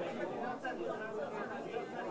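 Many people talking at once: indistinct, overlapping chatter of a roomful of people.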